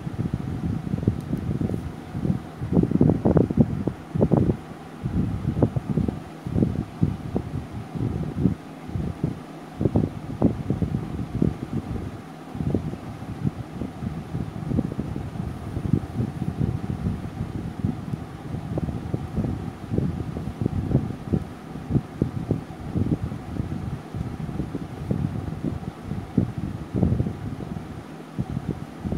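Moving air buffeting the microphone: an uneven, fluttering low rumble with no steady rhythm, typical of a fan's air stream hitting a phone microphone.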